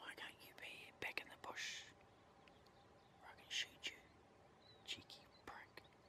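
A man whispering a few short, hushed phrases, with pauses between them.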